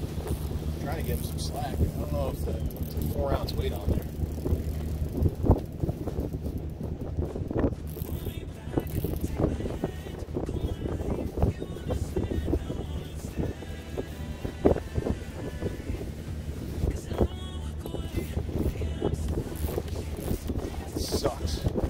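Fishing reel being cranked as line is wound in, its mechanism clicking, over wind on the microphone and a steady low hum.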